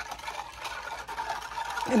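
A wire whisk stirring a thin vinegar-and-wine sauce in a clear baking dish, with a quick run of light ticks as the wires knock against the dish.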